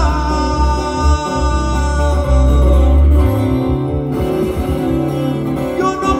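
Live sierreño music: a twelve-string acoustic guitar plays a lead over a deep bass line.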